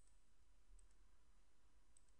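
Near silence with about three faint computer mouse clicks, spaced under a second apart, as mesh faces are selected on screen.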